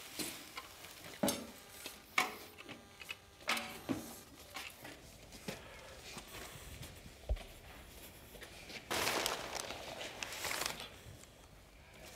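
A plastic bucket of seed grain being handled and hung on a hanging scale: scattered knocks and clinks, then a rustling hiss for about a second and a half toward the end.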